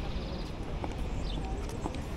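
Footsteps on a paved city sidewalk, two sharp ticks about a second apart, over a steady low rumble of traffic and wind. A few short high bird chirps sound about halfway through.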